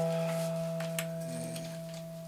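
A chord played on guitar and keyboard, left to ring and slowly fading, with a couple of faint ticks over it.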